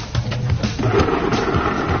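A few clicks, then about a second in a snail tail-cutting machine starts up and runs with a steady, dense mechanical rattle.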